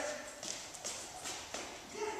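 A dog's claws tapping on a concrete floor as it steps and shifts into a sit, a few separate clicks at uneven intervals.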